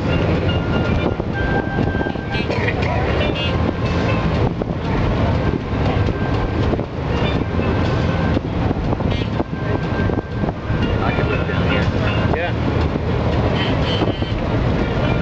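Amphibious duck tour vehicle's engine running steadily while it cruises on the water, a continuous low rumble.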